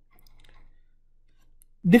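A few faint clicks in a quiet pause, then a voice starts a word near the end.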